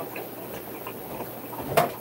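A single sharp knock of a hard object near the end, over a faint steady background noise.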